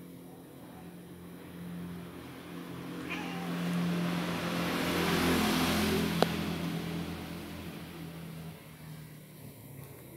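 A motor engine passing by: a steady hum that swells to its loudest about halfway through and then fades away, with one sharp click just after the peak.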